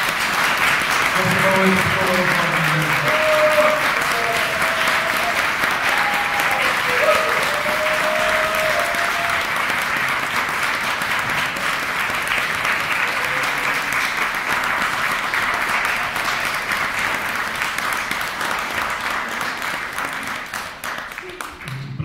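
Audience applauding steadily and warmly for about twenty seconds, easing off slightly near the end. A few voices call out among the clapping in the first several seconds.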